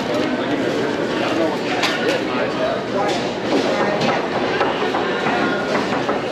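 Busy crowded store: many people talking at once in a constant babble, with scattered sharp knocks of a knife chopping brisket on a cutting board.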